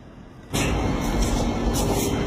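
A steady, loud rumble with a low hum cuts in suddenly about half a second in and holds on: the background noise of a handheld phone recording.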